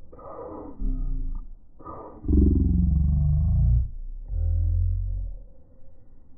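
A deep, drawn-out roar in three pulls. The longest and loudest runs from about two to four seconds in, and the last dies away just after five seconds.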